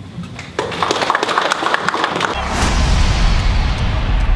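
A small group of people clapping, starting about half a second in. A bit past the middle a logo sting takes over: a rising whoosh over a deep booming rumble.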